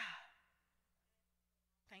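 A woman's breathy sigh close into a handheld microphone at the start, fading away within about half a second, then near silence.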